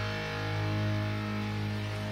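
Background music: a single sustained chord held and ringing on, with no beat.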